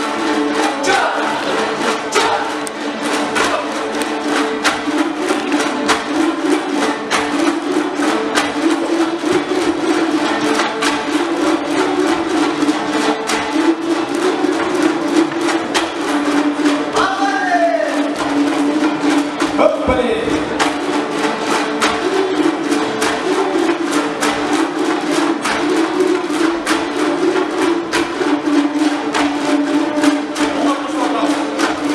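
An ensemble of Kyrgyz komuz lutes strumming a fast, even rhythm over a held low drone, with two brief falling glides a little after the middle.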